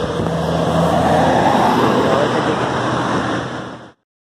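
Motor vehicle engines running at a roadside: a steady low engine hum at first, then a louder noisy swell through the middle as a vehicle passes. The sound fades out and stops just before the end.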